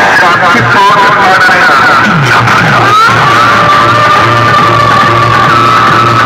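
Loud DJ music played through a tall stack of horn loudspeakers: quick sweeping, wavering tones for the first three seconds, then a steady held high tone over a pulsing bass beat.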